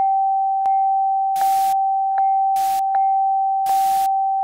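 Television test-pattern tone: one steady pure tone held unbroken, with soft clicks about every three-quarters of a second and three short bursts of static hiss.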